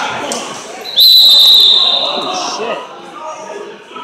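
Referee's whistle: one shrill, steady blast about a second in, held for most of a second before it fades, stopping the action. Crowd chatter in a large hall runs underneath.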